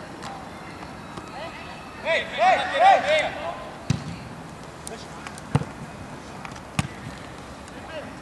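Players shouting short calls to each other about two seconds in, the loudest sound. Then come several sharp thuds of a football being kicked.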